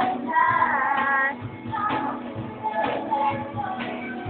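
Women singing a song over a strummed acoustic guitar and a steady cajon beat. A long held note with vibrato is loudest in the first second.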